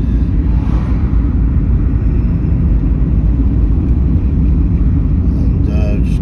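Car being driven at road speed, heard inside the cabin: a steady low rumble of engine and tyre noise, with a brief swell about a second in as an oncoming van passes.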